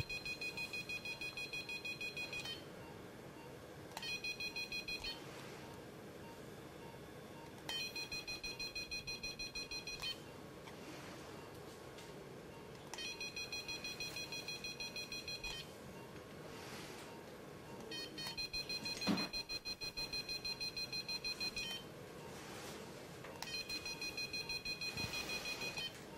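Activation tone of a Covidien Sonicision cordless ultrasonic dissector: a high, rapidly pulsing beep that sounds in six bursts of one to three and a half seconds, each burst marking the blade firing to cut and seal the rectal wall.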